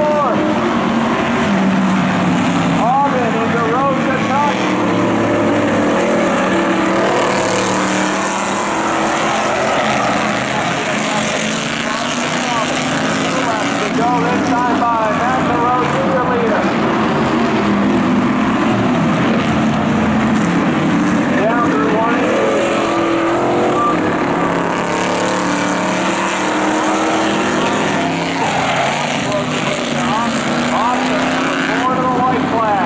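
Several street cars' engines running as they lap an oval track together, with voices from the crowd or a public-address announcer mixed in underneath.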